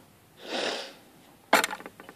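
A short sniff through the nose, then about a second and a half in a sharp click followed by a quick run of small clicks as the padlock is handled.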